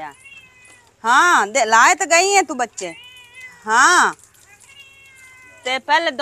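Mother cat meowing loudly and insistently: three long cries that rise and fall in pitch, about a second in, around two seconds and near four seconds, with fainter mews between. She is angry and upset because her kittens have been handled.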